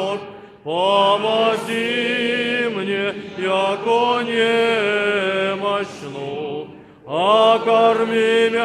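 Orthodox church choir singing a slow unaccompanied chant in held, gently moving chords, with a brief breath just before a second in and another near the end before the next phrase rises in.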